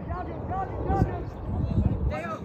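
Voices calling out across the football pitch, with wind rumbling on the microphone.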